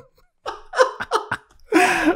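A man laughing hard in short, breathy, gasping bursts that start about half a second in, with a louder burst near the end.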